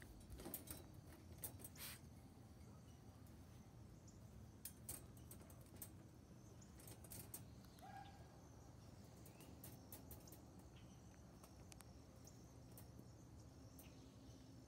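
Near silence: faint outdoor ambience with a few soft clicks and one brief, short chirp about eight seconds in.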